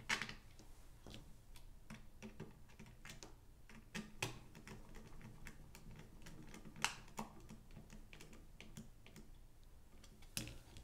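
Scattered light clicks and taps of 3D-printed plastic parts being handled and screwed together with a screwdriver, the sharpest about 4 and 7 seconds in, over a faint low hum.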